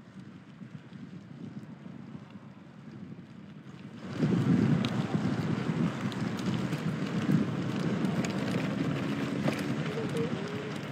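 Wind buffeting a phone's microphone while riding a bicycle. It is fairly quiet at first and jumps to a louder, rougher rumble about four seconds in.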